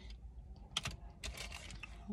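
Light clicks and rattles of plastic sunglass frames being handled and knocking together as the next pair is picked out: a couple of clicks about a second in, then a quick run of clicks.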